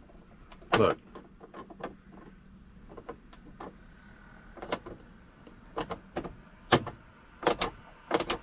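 Sharp plastic clicks and taps from fingers pressing and working a map-light lens cover on a 2003 Dodge Ram 1500's overhead console, trying to snap it back into its clips. The loudest clicks come about a second in and in a cluster near the end.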